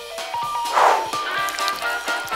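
Background music with steady held notes. A short rushing burst of noise comes a little before one second in.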